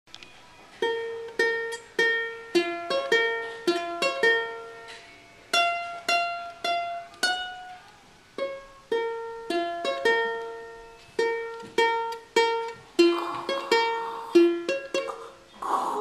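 Aloha ukulele picked one note at a time: a slow melody of single plucked notes, each ringing and dying away, in short phrases with brief pauses between them.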